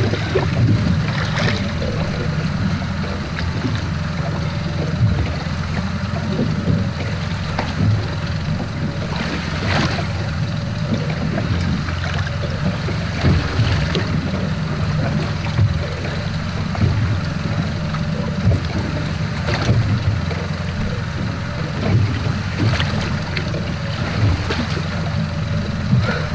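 Boat-deck sounds at sea: wind on the microphone and water against the hull over a steady low drone, with scattered brief knocks and splashes.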